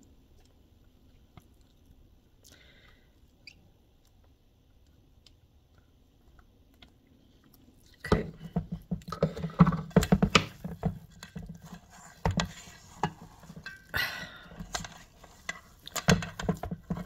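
Spoon and silicone spatula mashing and stirring a thick, pasty vegan cheese mixture in a stainless steel bowl: wet squishing and scraping with sharp clicks of metal on the bowl. Near silence for the first half; the mixing starts suddenly about halfway through.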